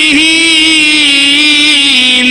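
A man's voice holding one long note in melodic Quran recitation (tilawat), the pitch wavering a little and sagging slightly, amplified through a microphone.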